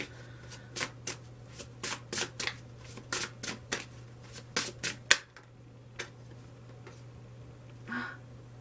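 A deck of large tarot cards being shuffled by hand, giving a run of irregular crisp card snaps and flicks for about five seconds, the sharpest one near the end of the run, then only an odd click as the shuffling stops.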